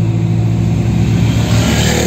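Car engine and road noise heard from inside the moving car's cabin, a steady hum with a rushing noise that swells near the end.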